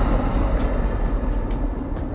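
A deep, noisy rumble, heaviest in the bass, that holds steady and eases slightly, with a few faint clicks on top: a cinematic rumble effect under an intro title card.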